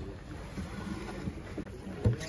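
Wind noise on the microphone: a low, steady rumble with no distinct events.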